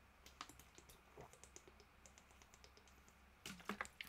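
Faint scattered clicks and crackles of a plastic water bottle being handled and drunk from, over near silence, with a couple of slightly louder clicks near the end.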